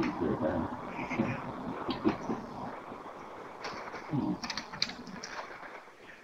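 Indistinct, muffled voices in the background, with a quick run of sharp clicks about three and a half to five seconds in.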